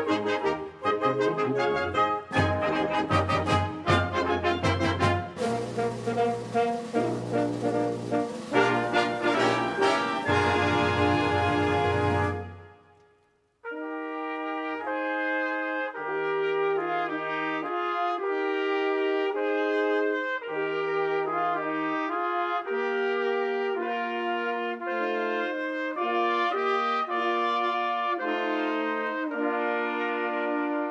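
Symphonic wind band playing: the full band with percussion and a cymbal wash drives to a cutoff about twelve seconds in. After a brief pause, a slower passage of sustained brass-led chords follows.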